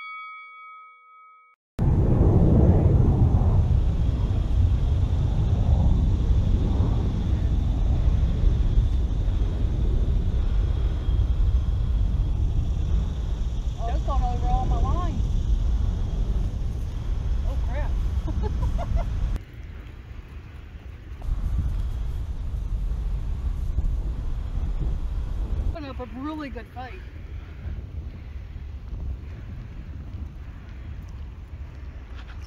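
A brief chime at the start, then a loud, steady low rumble of wind on the microphone that drops away abruptly twice. Faint voices come through the wind.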